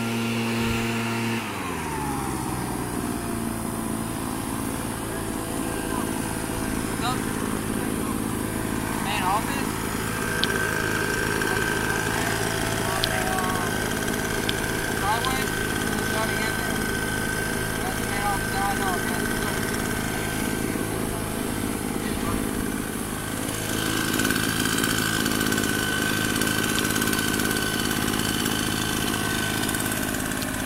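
A motor running steadily with a low droning hum. About a second and a half in its pitch drops and then holds steady, and short chirps sound over it in the middle.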